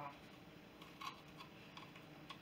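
Near silence: room tone, with a couple of faint clicks about a second in.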